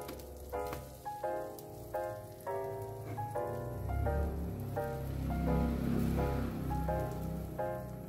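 Gentle instrumental background music with a repeating pattern of notes, over the sizzle of egg and bread frying in a pan. The sizzle is loudest in the middle.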